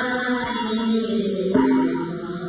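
Slow music of long held notes, with a step up to a higher note about halfway through.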